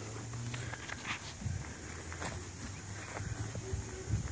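Quiet outdoor sound: soft footsteps and shuffling on grass, with a faint steady low hum underneath.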